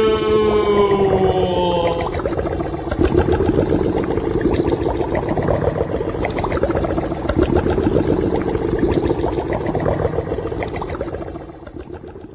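Radio broadcast audio: a held pitched tone slides down and ends about two seconds in. A dense, crackly drone with a steady low hum follows and fades out near the end.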